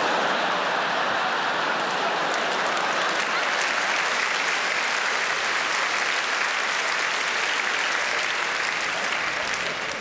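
Large theatre audience applauding steadily, the applause dying down slightly near the end.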